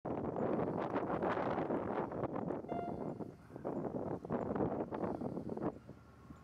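Gusty wind buffeting the microphone, rising and falling in loudness, with one brief high tone a little under three seconds in.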